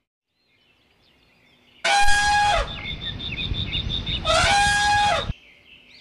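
Elephant trumpeting twice, two loud horn-like calls about two seconds apart, with a low noisy rumble between them.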